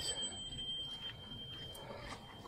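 A bicycle bell's ring dying away, one high ringing tone that lasts almost two seconds, over the soft wind and tyre noise of riding along a paved path.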